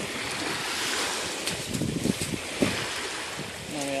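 A dog digging with its front paws in wet sand, a few short scrapes and slaps about halfway through, over small waves lapping at the shore and wind on the microphone.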